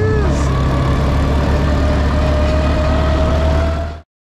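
Quad bike (ATV) engine running at steady speed, a low drone with a thin tone that climbs slowly. It cuts off suddenly at the end.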